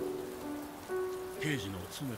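Steady rain falling, heard as an even hiss, with a few soft held tones beneath it.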